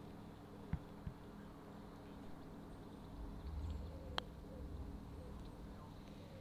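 Faint open-air quiet with a low rumble midway and a single sharp click about four seconds in: a putter striking a golf ball. A dull knock comes just under a second in.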